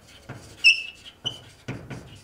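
Chalk writing on a chalkboard: a series of short taps and strokes, with a brief high-pitched chalk squeak a little over half a second in and a shorter one soon after.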